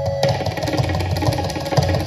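Tabla played fast in a drut teentaal solo: a dense run of rapid strokes, with deep bass strokes on the bayan under quick, ringing strokes on the dayan.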